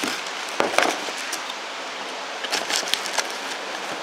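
Hands rummaging through a cardboard parts box, plastic packaging crinkling, with a few brief clicks and rattles of small parts.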